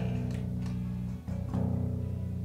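Five-string electric bass with an active preamp, played through an amplifier: low notes ring out, one is cut short and a new one picked a little past a second in, while the preamp's treble control is turned.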